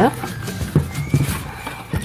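A thick cardboard sticker play book being opened by hand: handling rustle with a few light knocks of the board against the table.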